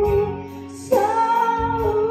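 A woman singing an Indonesian Christian worship song into a handheld microphone over instrumental accompaniment. She ends one held note early on and comes in on a new long, slightly wavering note about a second in.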